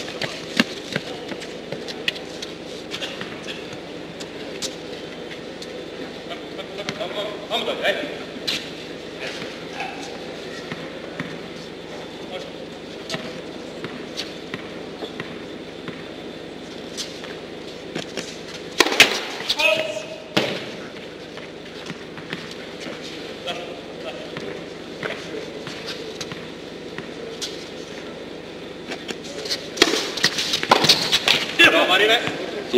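Tennis ball bounced on an indoor hard court between points, with low voices in the hall and a louder voice about twenty seconds in. A serve is struck at the very end.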